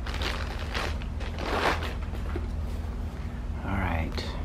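Soft rustling of a coil of rope being picked up and handled, in several brief strokes, over a steady low hum.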